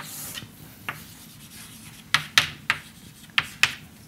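Chalk writing on a blackboard: a string of short scratchy strokes and taps, several of them in quick succession in the second half.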